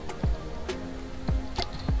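A few separate computer keyboard keystrokes, about five taps spread across two seconds, over a steady faint humming tone.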